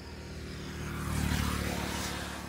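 Motor scooter engine passing by, its drone growing louder to a peak about a second and a half in and then starting to fade.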